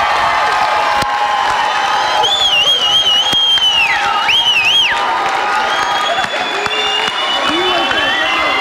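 Studio audience applauding and cheering, with crowd voices. A high, wavering call stands out above the applause for a few seconds in the middle.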